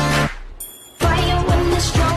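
Music: a short pitched phrase, a brief high jingle about half a second in, then a beat with a heavy kick drum about twice a second coming in about a second in.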